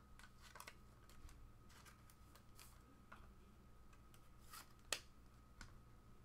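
Faint handling of a trading card and plastic card holders: scattered light clicks and rustles, with one sharper plastic click about five seconds in.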